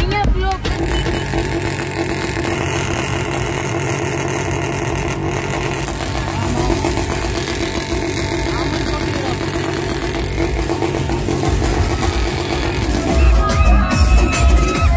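Motorcycle engines running amid the voices of a crowd, with music in the background. Loud music with a heavy bass beat comes back near the end.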